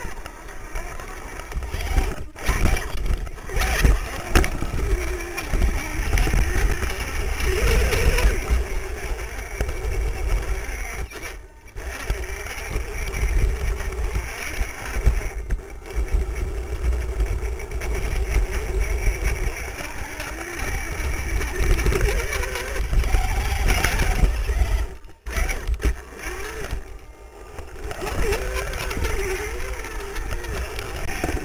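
Dual brushed electric motors and geared drivetrain of an RC rock crawler whining and straining as it climbs over rocks, heard from a camera mounted on the chassis, with a heavy low rumble of the chassis jolting on the rocks. The sound cuts out sharply for a moment several times.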